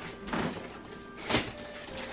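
Wrapping paper on gift boxes rustling in two short bursts, about a third of a second and a second and a third in, over faint background music.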